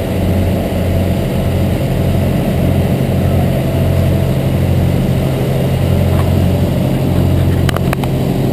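An engine running steadily with a deep, even hum that swells slightly in a regular rhythm. A couple of sharp clicks come near the end.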